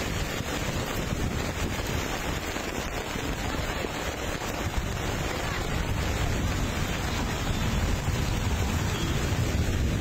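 Floodwater rushing down a street in a steady wash of noise, with wind buffeting the phone's microphone. It grows a little louder in the second half.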